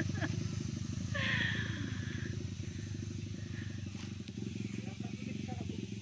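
Small ATV (quad bike) engine running steadily as the quad drives away along a dirt track, its low drone slowly fading.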